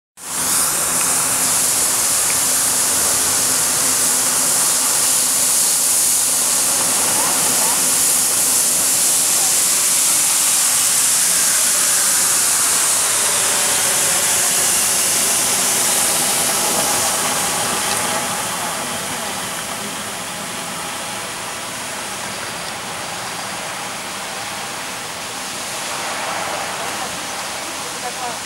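Fiorentini EcoSmart ride-on floor scrubber running, with a steady high hiss from its suction and brush motors. The sound drops noticeably about two-thirds of the way through as the machine moves off.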